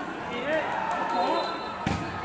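Spectator voices murmuring around an outdoor volleyball court, then a single sharp smack of the volleyball near the end, typical of a serve being struck.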